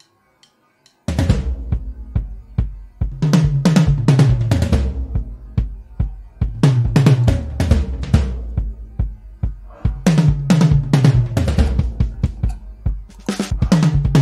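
Addictive Drums 2 software drum kit playing a preset pop intro groove from its MIDI beat library, with kick and snare in a steady repeating pattern. It starts about a second in, after a moment of silence.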